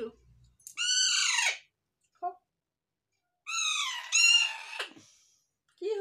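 Young Alexandrine parakeet calling: two drawn-out, high-pitched calls, each arching up and then sliding down in pitch, about a second in and again at about three and a half seconds, the second one longer.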